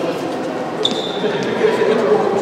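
Sports-hall ambience: overlapping chatter of voices in a large echoing hall, with a ball bouncing on the wooden floor and a brief high squeak just before a second in.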